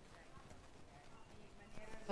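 Near silence: room tone in a pause in the discussion, with faint speech rising toward the end.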